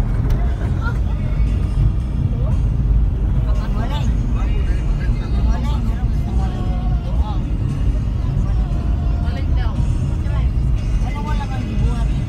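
Steady low rumble of a vehicle's engine and tyres on a paved road, heard from inside the moving vehicle, with voices heard over it now and then.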